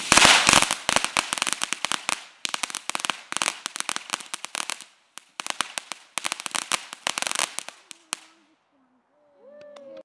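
Ground fountain firework crackling: rapid clusters of sharp pops from its sparks, with a brief lull about five seconds in. It dies out about eight seconds in.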